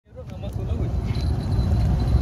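Wind buffeting the phone's microphone: a loud, unsteady low rumble that fades in at the start.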